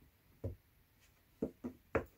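Four short, sharp plastic knocks and clicks, each with a brief ring, as a plastic phone clamp is turned and screwed onto a mini tripod's ball-head mount.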